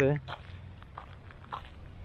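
A few soft footsteps on a sandy gravel path, faint and irregular, after a man's voice breaks off at the start.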